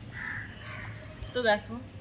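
A crow cawing once, short and loud, about one and a half seconds in, with a fainter call near the start, over a low steady hum.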